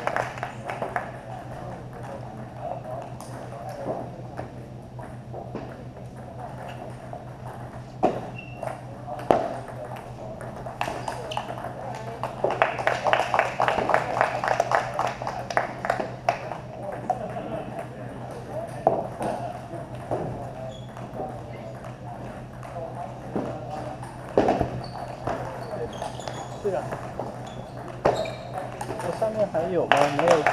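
Table tennis balls clicking off paddles and table tops in rallies, sharp single ticks at irregular spacing and quicker runs of them, over background voices and a steady low hum.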